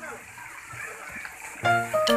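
Water splashing and sloshing in a shallow pool as an inflatable tube is pushed through it, heard during a break in background acoustic guitar music that comes back in near the end.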